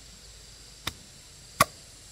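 Machete blade chopping down into the end of an upright bamboo tube to split it: two sharp knocks, the second much louder.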